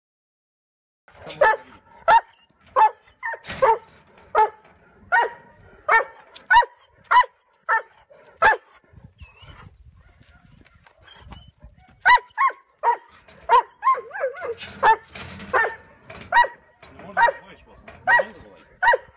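A boar-hunting dog barking over and over in short, sharp barks, about three every two seconds. Barking starts about a second in, breaks off for a few seconds midway, then resumes a little faster, about two a second.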